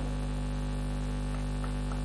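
Steady electrical mains hum, a low, even buzz with its overtones, running unchanged in a pause between words.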